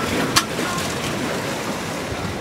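Steady noise of ocean water and wind around a boat at sea, with one sharp knock about a third of a second in.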